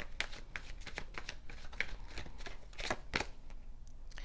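A tarot deck shuffled by hand: a quick, irregular run of cards slapping and flicking against each other that stops shortly before the end.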